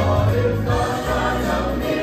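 Mixed church choir of women's and men's voices singing a hymn together.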